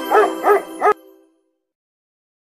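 A dog barking three times in quick succession over music, with the music ending about a second in.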